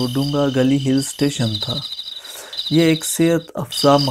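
Steady, high, pulsing chirring of forest insects throughout, with a man's voice talking over it for about the first second and again briefly near the end.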